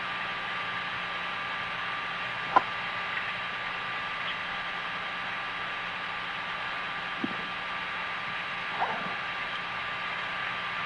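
Steady hiss with a low hum and faint steady tones, the background of the Apollo 8 crew's onboard voice recording. One sharp click comes about two and a half seconds in, and two fainter blips come near the end.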